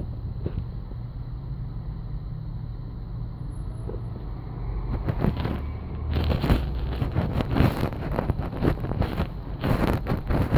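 Street traffic: a steady low engine rumble that grows as a city bus passes close about halfway through. In the second half, wind gusts buffet and crackle on the phone's microphone.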